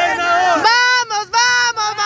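Women and a young girl singing a chant together in high voices, phrase after phrase with short breaks between them.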